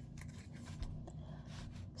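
Faint sliding and small ticks of Pokémon trading cards being handled one at a time, over a faint low steady hum.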